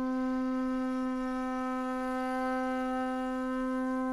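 A solo wind instrument holding one long, steady note.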